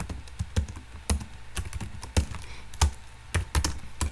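Computer keyboard being typed on: irregular individual keystroke clicks, about two or three a second.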